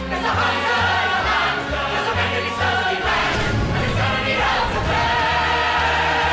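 A stage-musical chorus singing loudly together over backing music with a pulsing bass beat.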